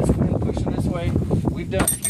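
Wind buffeting the microphone in a dense, fluttering low rumble, with brief fragments of a man's voice. Near the end comes one sharp metallic clink with a short high ring.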